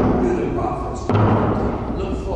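A man's voice speaking, with a dull thump about a second in.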